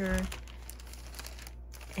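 Clear plastic bag crinkling as it is handled.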